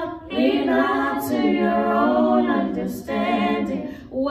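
Three women's voices singing a cappella in harmony into handheld microphones: after a short breath at the start, one long unbroken phrase with several voices on different pitches at once.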